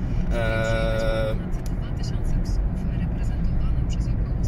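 Steady low rumble of engine and road noise inside the cabin of a Mercedes C220 CDI (W203) with a 2.2-litre four-cylinder diesel, cruising at speed.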